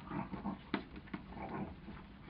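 Two border collies play-fighting, giving short rough vocal noises in irregular bursts, with a sharp click or snap about three-quarters of a second in.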